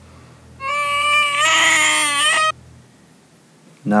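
A high-pitched, drawn-out wailing cry, about two seconds long, starting suddenly and cut off abruptly, over a low steady hum.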